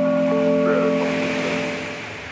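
Lo-fi hip hop instrumental: steady held chord tones over a bass line, with a swell of hiss washing over them that fades near the end.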